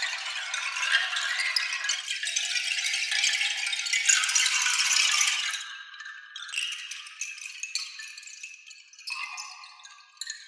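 Sampled bamboo wind chimes, six sets recorded in an orchestral hall, played from a keyboard. A dense clatter of many hollow wooden tubes runs for about five seconds, then thins to sparser, quieter clacks that die away into the hall.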